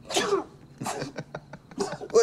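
A man's short, breathy vocal bursts, several in quick succession.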